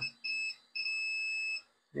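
Multimeter continuity beeper sounding a steady high tone, a short beep and then a longer one of almost a second, as the probes touch the empty pads of a removed capacitor. The beep means there is still a short to ground with the capacitor out.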